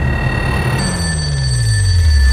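A desk telephone ringing, its steady high tones changing pitch about a second in. Underneath, a deep tone slides steadily downward and grows louder toward the end.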